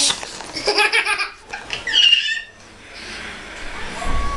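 A toddler laughing and squealing in short bursts, with a higher-pitched squeal about two seconds in, then quieter.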